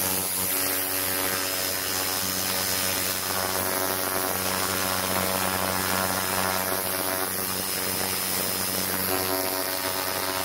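Ultrasonic cleaner tank running with liquid circulating through it: a steady electrical buzz with a hum underneath and a hiss over it, from the transducers driving the water into cavitation and microbubbles.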